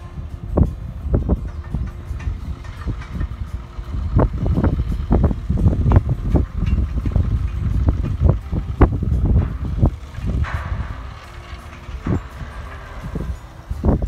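A 1960s Ruston-Bucyrus RB30 dragline working at a distance, its engine running as it swings the boom. Much of it is covered by gusting wind rumbling on the microphone, strongest in the middle.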